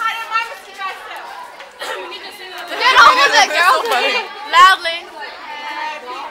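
Several teenage girls' voices chattering, overlapping and getting louder for a while in the middle.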